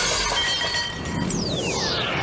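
Glass shattering, with the broken shards ringing and tinkling after the blow. About a second in, a whistle falls steeply in pitch.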